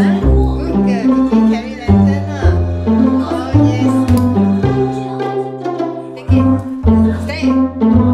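Upbeat instrumental background music with plucked strings over a bass line that steps from note to note.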